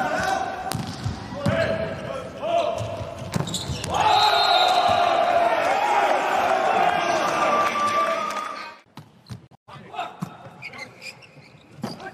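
A volleyball being struck during indoor rallies, sharp ball contacts over players' voices and shouting. The sound cuts off suddenly about three-quarters of the way through, and a new rally begins with more ball hits.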